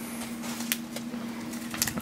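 Quiet room tone with a steady low hum, broken by a light tick partway through and a brief rustle near the end as a foil booster pack is picked up.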